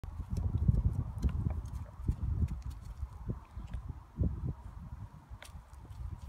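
A horse moving about on grass turf: irregular low thuds of its hooves, loudest in the first couple of seconds and again about four seconds in.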